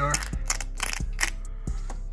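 A small metal pick scraping and picking at flaking paint and rust bubbles on an LS V8 engine block: a handful of short, scratchy clicks at uneven intervals, over a faint steady hum.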